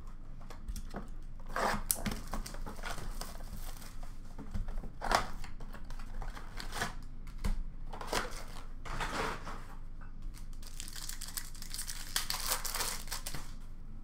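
Hockey card blaster box and its foil card packs being torn open and handled: several short sharp rips of wrapper and cardboard, then a longer stretch of steady crinkling near the end.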